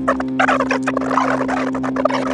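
A dense, rapid rattling sound lasting most of the two seconds, over a steady low hum or held tone.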